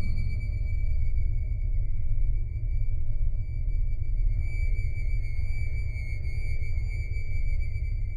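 Background music: a dark ambient drone with a deep low rumble under a steady high-pitched tone.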